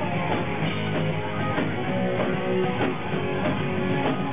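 A rock band playing live at full volume: electric guitars and drums with a steady run of drum hits, heard from within the crowd.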